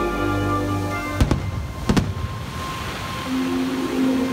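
Firework shells bursting over the show's music: two sharp bangs about a second in and two more just before two seconds, followed by a crackling hiss as the sparks fall. Held notes of the music play before the bangs and return near the end.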